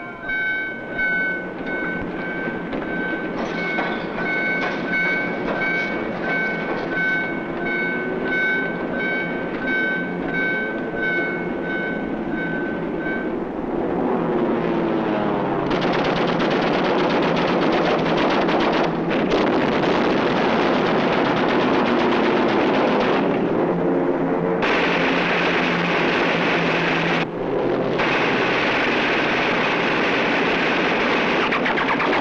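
A warship's general alarm sounding as a run of pulsed high tones, a little faster than once a second, which stops about halfway through. Then heavy shipboard gunfire takes over as a dense, loud, continuous racket that breaks off twice near the end.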